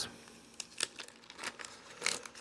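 Wax paper wrapper of a 1987 Topps baseball card pack crinkling and tearing as it is pulled open, in a few short, faint crackles.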